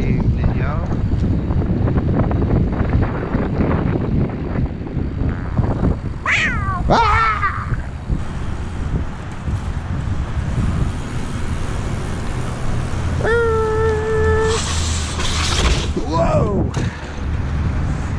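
Wind buffeting the microphone, a loud low rumble throughout. It is broken by a short call that glides up and down about six seconds in and again near the end, and by a steady tone held for about a second past the middle, followed by a brief hiss.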